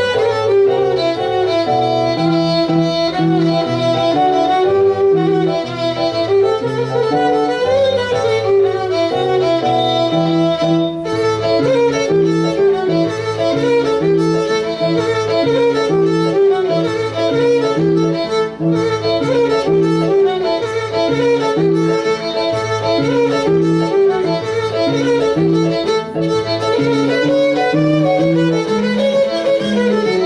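Gadulka, the Bulgarian bowed folk fiddle, playing a horo dance tune, accompanied by an electronic keyboard with a stepping bass line and chords.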